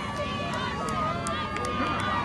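Spectators' voices shouting and calling from the shore during a rowing race, several voices overlapping, with a few short sharp clicks.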